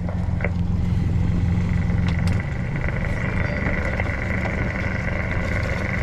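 A motor running steadily on a small boat. Its low hum shifts about two and a half seconds in, and a steady high whine joins it at the same moment.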